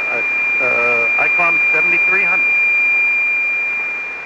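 Another station tuning up on a frequency already in use: its carrier comes through the 40-metre SSB receiver as a steady high whistle over band noise. A received voice is faintly heard under the whistle for the first two seconds or so.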